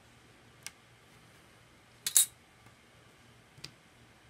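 A few light taps and clicks of hands and tools against a craft work surface while polymer clay is handled, the loudest a quick double tap about two seconds in, with quiet between.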